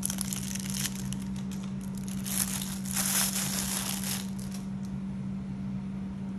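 Clear plastic wrapping crinkling and rustling as it is pulled off a pair of sunglasses, in irregular strokes that are loudest about two to four seconds in. A steady low hum runs underneath.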